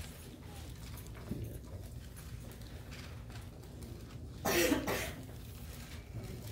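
A man coughs once, a short loud cough about four and a half seconds in, over a low steady room hum.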